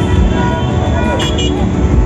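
Dense road traffic in a jam: engines running under a crowd of voices, with a quick double horn beep about a second and a quarter in.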